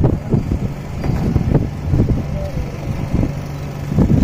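Low, uneven rumbling background noise, with faint voices.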